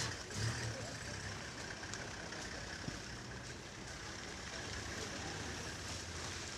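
Steady low hum and hiss of outdoor background noise with faint voices from the gathered people.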